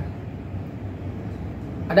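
Steady background noise of the room in a pause between speech, an even hiss and rumble with no distinct event.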